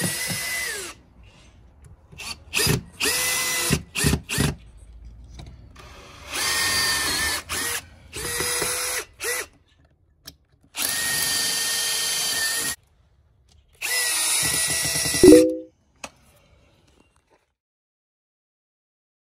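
Makita cordless drill/driver driving 1-inch screws through the edge of a screen frame, its motor whining in a series of short runs that start and stop, about nine in all, some spinning down as the trigger is released.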